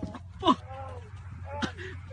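Two short cries with falling pitch, the first about half a second in and louder, the second near the end, over a steady low hum.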